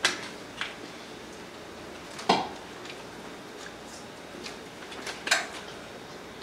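Four sharp clinks of hard dishware being handled, each ringing briefly. The loudest comes a little past two seconds in and another just past five seconds.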